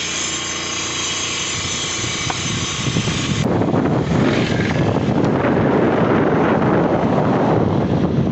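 Wind buffeting the microphone over the engine and road noise of a moving motor scooter. About three and a half seconds in, a cut changes it to a denser, heavier rush of wind.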